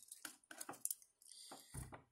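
Faint clicks, scrapes and rustles of a plastic fingerboard being handled and set on a wooden tabletop under the fingers, with a soft thump near the end.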